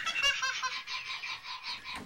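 A toddler laughing in a rapid run of high-pitched giggles that trails off and fades.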